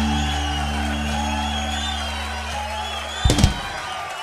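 The final held chord of a rock song ringing out and slowly fading, with wavering high tones above it. A sudden loud thump a little over three seconds in cuts off the low notes, leaving only a fading high tail.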